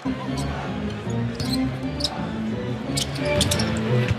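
Arena music with a steady low bass line that changes note in steps, starting suddenly, with a few short sharp sounds from the court over it.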